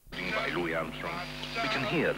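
Several voices talking and calling over one another, their pitch sliding quickly up and down, over a steady bed of music.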